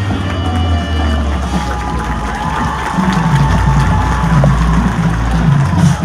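Marching band show music from the field: a long held low note under a sustained higher tone, with a rhythmic low pulse of drums joining about halfway through.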